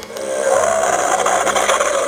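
A children's sound book's small electronic speaker playing a buzzing, rasping sound effect, set off by pressing one of its picture buttons. It starts about a quarter second in and holds steady.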